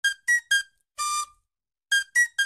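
A high-pitched synthesized melody in the intro of a music track: three quick staccato notes, then a longer held note about a second in, then a short pause.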